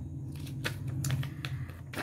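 Handmade paper cards being handled in the fingers: a few light clicks and rustles of card stock over a steady low hum.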